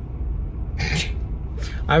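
Steady low rumble of a car running, heard inside its cabin, with a short breathy laugh about a second in. Speech starts near the end.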